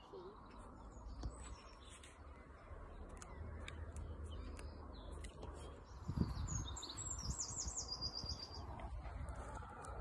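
A songbird singing a quick run of short, high, repeated notes in the second half, over a faint low background rumble.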